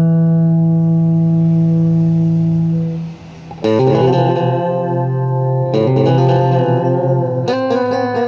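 Electric guitar played through a Gonk! fuzz pedal, a clone of the Clari(not) fuzz. A held, fuzzed note rings for about three seconds and fades, then new notes are played after a short gap.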